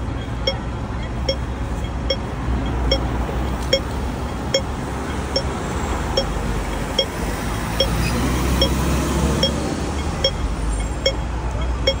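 Pedestrian crossing signal pipping steadily, one short pip about every 0.8 seconds, over the rumble of road traffic, which swells as vehicles pass during the second half.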